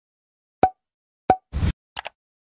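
Channel-logo intro sound effect: two short, sharp hits with a brief ringing note about two-thirds of a second apart, then a short burst of noise and a quick double click as the logo appears.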